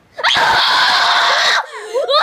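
A child screaming loudly, one long scream of about a second and a half starting just after the start, with a second scream beginning near the end.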